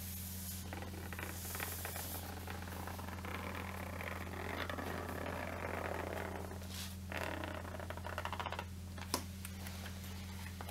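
Zipper of a fabric Estée Lauder Lilly Pulitzer makeup bag being drawn slowly open along the bag, a soft continuous rasp, followed by a few light clicks near the end. A steady low hum and hiss from the on-camera microphone runs underneath.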